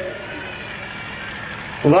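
Steady background rumble and hiss in a pause between words. Near the end a man's voice comes in over the loudspeaker, starting the Sikh salutation 'Waheguru'.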